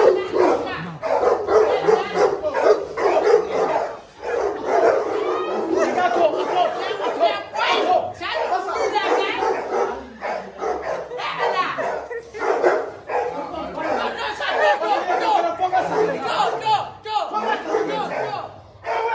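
Several voices talking over each other while a dog barks repeatedly.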